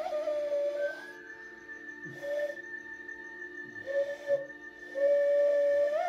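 Hand whistle blown through cupped hands: a hooting note with a wavering vibrato. It drops away about a second in, sounds two short notes, and near the end returns as a long held, warbling note. A faint steady high tone sits underneath.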